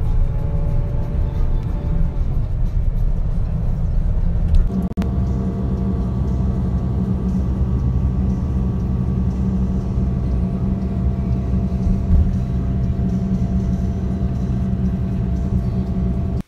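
Steady low rumble of a coach bus driving, heard from inside the passenger cabin. About five seconds in the sound cuts abruptly to a similar rumble carrying a steady hum.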